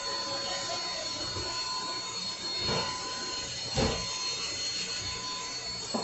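Electric nail drill (e-file) running with a steady high whine as its thin bit files the client's nail during an acrylic fill. There are two brief louder sounds near the middle.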